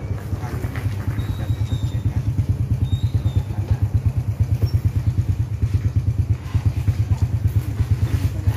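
Small underbone motorcycle's single-cylinder engine idling with a steady, rapid low putter.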